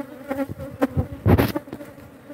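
Honeybee colony buzzing on the open top bars of a hive: a steady hum from a calm colony. A few clicks and a brief loud rush of noise come about a second and a quarter in.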